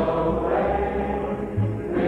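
A folk song sung by several voices together in harmony, holding long notes, with acoustic folk-band accompaniment.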